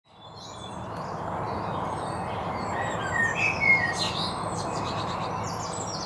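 Birds chirping and calling over a steady outdoor background hiss, fading in from silence at the start; a cluster of short, high chirps comes in the middle.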